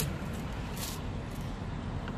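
Steady low outdoor rumble, with a brief rustle about three-quarters of a second in as a straw's wrapper is torn open.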